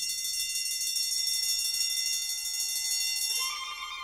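Electric alarm bell ringing continuously with a fast, bright clatter, cutting off a little over three seconds in. A softer held tone follows near the end.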